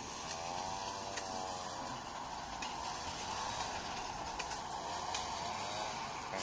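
Steady engine drone, its pitch slowly wavering up and down, with a few faint clicks.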